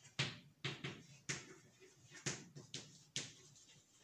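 Chalk knocking and scraping against a chalkboard as figures are written: a string of about seven short, sharp taps at an uneven pace.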